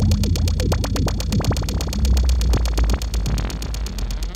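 Electronic techno track: a rapid, steady ticking beat over deep bass, with synthesizer lines sliding up and down in pitch.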